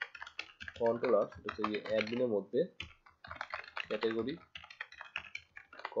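Typing on a computer keyboard, a quick run of key clicks as a terminal command is entered, with a voice speaking over it.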